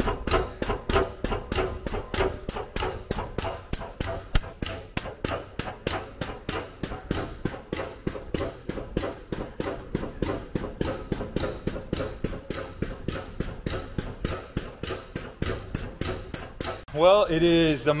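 Air-operated drum pump moving engine oil through a handheld metering nozzle, knocking in an even rhythm of about four strokes a second over a steady hum.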